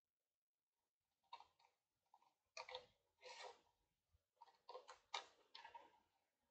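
Scissors cutting through a sheet of designer paper: a string of faint, short snips beginning about a second in.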